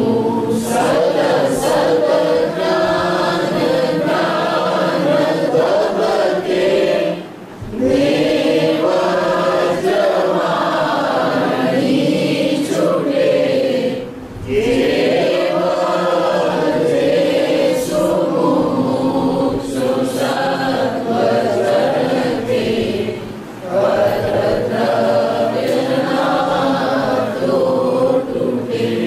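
Voices chanting a devotional verse in a slow, melodic recitation, in long held phrases broken by short pauses for breath about three times.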